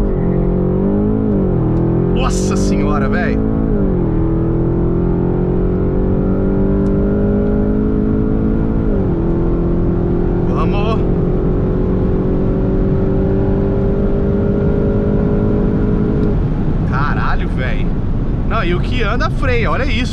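Porsche Panamera Turbo S E-Hybrid's twin-turbo V8 at full throttle, heard inside the cabin. The pitch climbs through each gear and drops sharply at upshifts about 1.5, 4 and 9 seconds in. The engine note falls away about 16 seconds in as the throttle is lifted at the end of the half-mile run, leaving road and wind noise.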